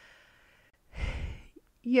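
A woman breathing audibly into a close microphone during a pause: a faint breath in, then a louder breath out about a second in that puffs against the mic.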